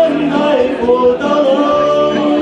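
A man singing a Cantonese song into a handheld microphone over a karaoke backing track, his voice carrying held, wavering notes.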